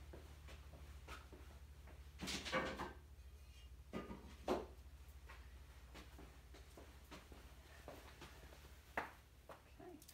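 Scattered knocks and clinks of glazed ceramic pieces being set down and shifted on a table, with a cluster of them a little over two seconds in and another at about four and a half seconds, over a steady low hum.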